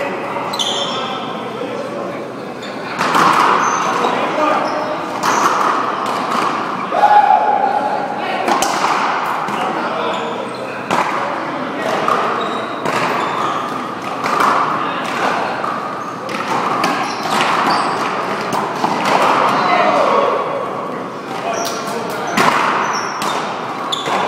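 One-wall racquetball play: sharp smacks of racquets hitting the ball and the ball striking the wall and floor, irregularly every second or two, with players' voices throughout.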